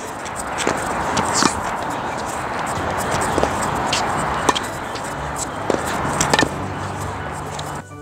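Background music over several sharp pocks of a tennis ball striking the strings of a Wilson Pro Staff X racket during volley exchanges, irregularly spaced about a second or so apart.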